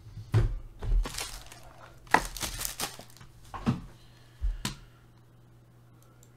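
Trading card pack wrapper crinkling and cards being handled, in a few short rustles and crackles during the first five seconds.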